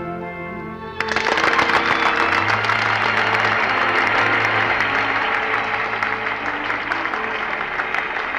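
The song's final held note and orchestral chord end about a second in, and an audience breaks into applause over the orchestra, which keeps playing underneath.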